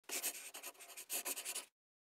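A quick scratching sound, like a pen on paper, in two bursts about a second and a half long in all, stopping abruptly.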